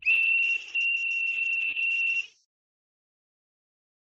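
A high, steady whistle tone heard over a voice-chat connection, lasting a little over two seconds with a brief dip near the start, then cutting off suddenly.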